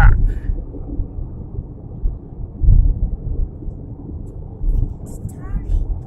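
Steady low road rumble inside a moving car's cabin at highway speed, swelling louder twice.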